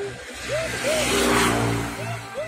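A car driving past on the street, its noise swelling to a peak a little past halfway and then easing off. Background music with a short repeating melodic figure runs underneath.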